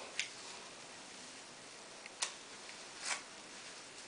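Wide-tooth plastic comb pulled through wet, conditioner-coated curly hair, giving three brief, faint crackles, the last a little longer.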